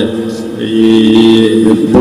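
A man's voice chanting in a drawn-out, sing-song delivery, ending in one long held note that takes up most of the second half.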